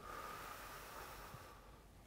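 A man's deep breath out, a breathy hiss that starts suddenly and fades away over about a second and a half.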